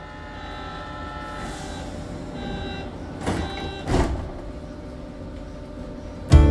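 Ski-resort gondola cabin travelling along its cable, heard from inside the cabin: a steady rumble with a thin high whine, and two knocks about half a second apart a little past the middle.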